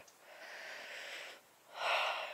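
A person breathing close to the microphone: a long soft breath, a short pause, then a louder breath near the end.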